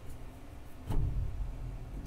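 A single dull thump about a second in, followed by a low rumble.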